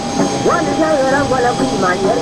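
Several people's voices talking over a steady whine from a taxiing business jet's engines.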